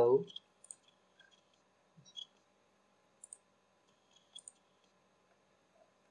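Computer mouse buttons clicking: a few faint, sharp clicks spaced about a second apart.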